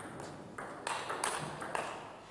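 Table tennis rally: the ball clicking sharply off the bats and the table, a quick run of hits a few tenths of a second apart.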